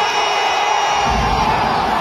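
Large indoor crowd cheering and shouting after a boxer is knocked down, with a low thumping beat of music coming in about halfway through.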